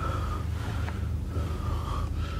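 A man breathing audibly over a low steady background hum.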